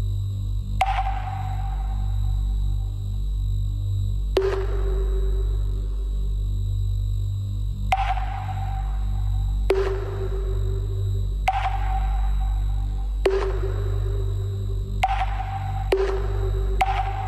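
Electronic trance music: a steady deep bass drone under sharp, ringing synth pings that fade out. The pings come about every three and a half seconds at first, then about twice as often.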